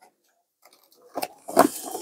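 Near silence for about the first second, then a few short rustles and clicks as a pigeon is handled and pushed through the lid of a plastic fruit crate.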